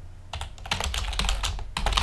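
Rapid typing on a computer keyboard: a quick run of key clicks starting about a third of a second in.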